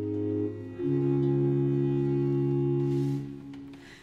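A period-instrument Baroque ensemble holding sustained chords: a first chord changes to a fuller one about a second in, which is held steady and then dies away near the end.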